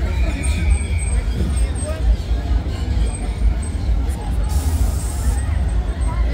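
Funfair crowd ambience: distant chattering voices over a steady low rumble, with a short hiss about a second long near the end.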